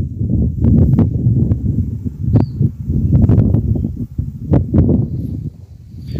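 Strong wind buffeting the microphone: an uneven low rumble that swells and dips, with a few sharp crackles.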